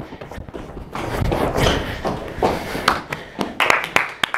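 Thumps and shuffling footsteps with brief voices, then a few people clapping their hands from about three seconds in.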